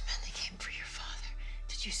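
A woman whispering urgently, breathy and hushed, over a low steady hum.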